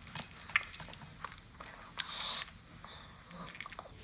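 Maltese dog eating from a bowl: irregular crunching and chewing clicks, with a brief louder burst of noise about two seconds in.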